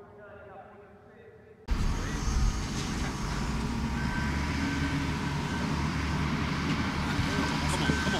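Faint voices, then, nearly two seconds in, a sudden switch to a steady low rumble of outdoor noise that holds for the rest of the stretch.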